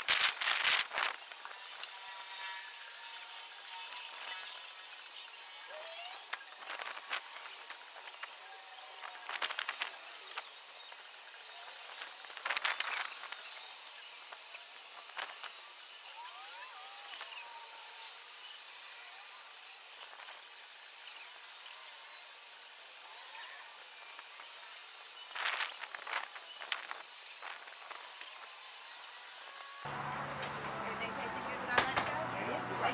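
Outdoor ambience: a steady high hiss, with faint chirps and a few short clatters scattered through, about a second in, twice in the middle and once near the end.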